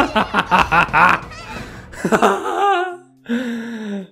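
A man laughing in quick rhythmic bursts, then a falling, drawn-out vocal sound and a held note near the end.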